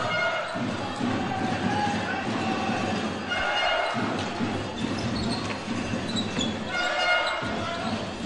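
Sports-hall sound of an indoor hockey game in play: a steady din of voices echoing in the large hall, with short pitched calls rising above it three times and knocks of play on the hall floor.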